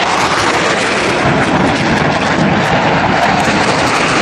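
Military jet aircraft passing close, its jet engine noise a loud, steady roar.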